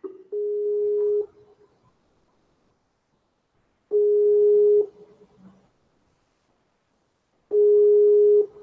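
A steady electronic tone, about a second long, sounding three times at even intervals of roughly three and a half seconds, like a telephone ringing or signal tone.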